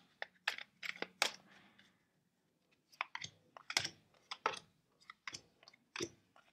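Tarot cards being dealt one by one from the deck onto a hard table top: irregular light clicks and slaps as cards are drawn and laid down, with a pause of over a second partway through.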